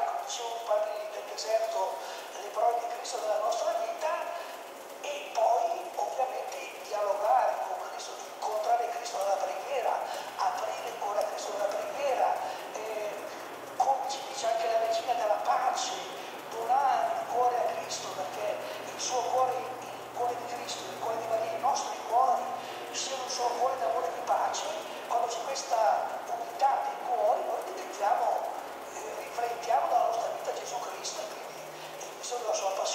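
Indistinct voices murmuring throughout, with many small, sharp clicks and ticks from copper winding wire being worked by hand into the slots of an electric motor's stator.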